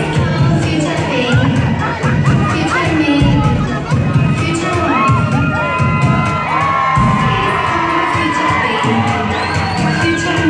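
A crowd of guests cheering, with many high shouts and shrieks rising and falling, over dance music whose bass runs underneath.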